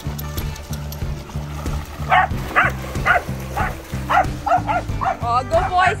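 A dog barking over and over, about two barks a second, starting about two seconds in and coming faster near the end, over background music with a steady bass line.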